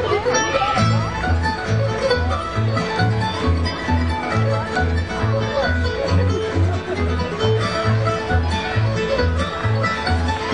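A bluegrass instrumental played live on mandolin, acoustic guitar and upright bass. The plucked bass notes come about twice a second under fast picked mandolin and guitar lines.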